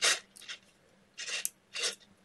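Small neodymium magnet balls rattling and rasping against each other as fingers twist and pull a chain of them, in short bursts: a loud one at the start and two more in the second half.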